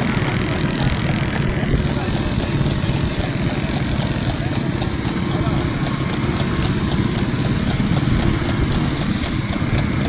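Horse's hooves clip-clopping on a paved road at a quick trot, an even beat of about three strikes a second, over the steady running of motorcycle engines alongside.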